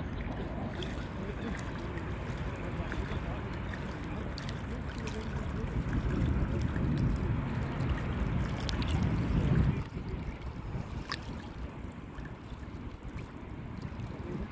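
Sea water sloshing and splashing with wind rumbling on the microphone; the rumble grows louder and then drops off sharply about ten seconds in.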